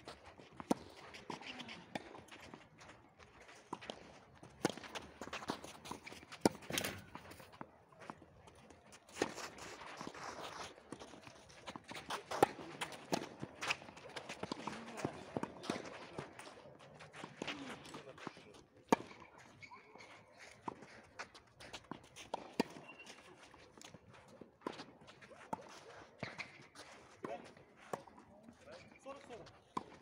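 Irregular sharp knocks of tennis balls off rackets and bouncing on the clay court, with players' footsteps and low voices in between.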